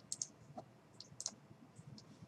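Several light clicks of a computer mouse and keyboard, some in quick pairs.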